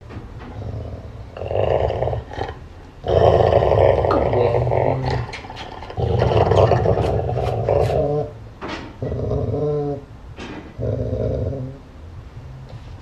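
Golden retriever growling playfully in about five bouts of one to two seconds each, a low rough rumble with short gaps between. The dog stays friendly, kissing the man's face between growls.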